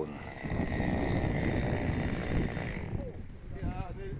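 A chainsaw running steadily at a distance, stopping about three seconds in; faint men's voices follow near the end.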